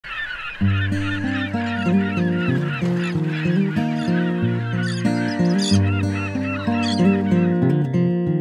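A flock of gulls calling and squawking, dense at first and thinning out after about five seconds, with acoustic guitar music starting under them about half a second in.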